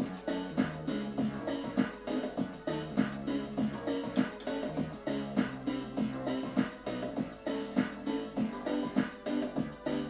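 Yamaha PSR-270 home keyboard played with both hands: a continuous passage of chords and notes.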